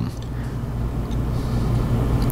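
Steady low background hum with a faint even hiss, with no strokes or changes.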